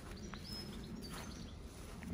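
Outdoor ambience: a steady low rumble with faint, high-pitched bird chirps in the first second.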